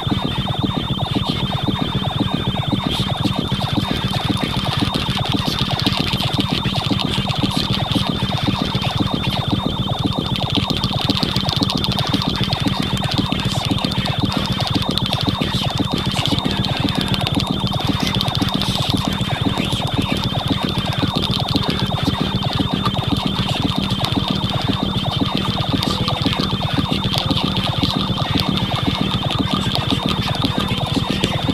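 Improvised electronic ambient music from synthesizer, sampler, radio and effects units: a dense texture of rapid clicking pulses over a low drone, with a steady high tone above.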